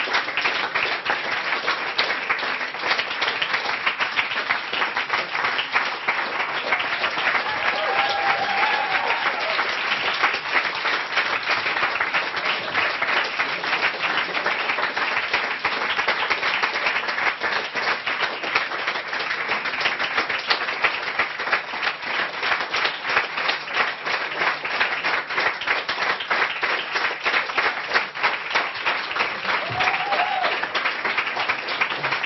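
A packed audience applauding without a break at the end of a reading, calling the performer back for an encore.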